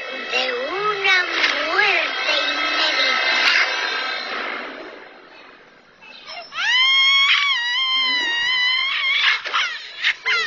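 A voice run through a voice changer into a cartoon alien voice, making wordless moans and wails with gliding pitch. It dies down to a quiet stretch around the middle, then gives a long high wail with wavering pitch, ending in short choppy sounds.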